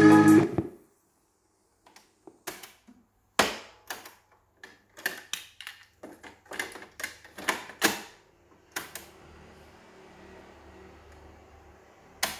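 Music playing from the cassette deck of a Victor CDioss QW10 boombox cuts off under a second in, followed by a run of plastic clicks and clatter as a cassette door is opened and a tape is handled in the deck. Near the end a faint steady hum and hiss comes from the player.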